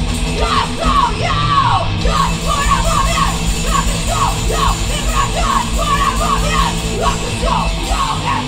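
Live thrash-metal/hardcore band playing loudly: distorted electric guitars, bass guitar and drums, with yelled vocals over them.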